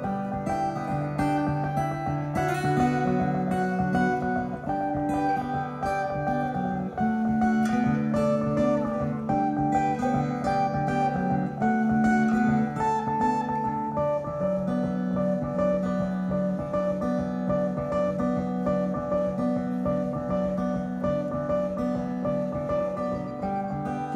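Live band playing an instrumental guitar passage without singing: a strummed acoustic guitar with an electric guitar.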